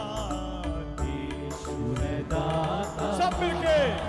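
Live amplified devotional music: singing over keyboard, bass and a steady drum beat, with a voice sliding down in pitch near the end.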